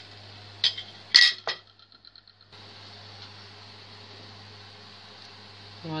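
Two sharp clinks of a metal spoon against cookware, about half a second apart, as a spoonful of jam syrup is taken from the pot and put on a plate. A short gap follows, then a steady low hum.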